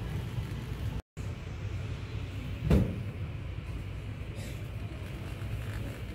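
Shopping cart rolling over a hard store floor, a steady low rumble, with one sharp thump near the middle.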